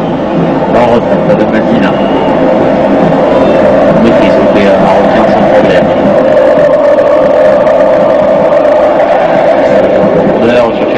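Steady, loud football crowd noise with a sustained droning band, with a commentator's voice briefly at the start.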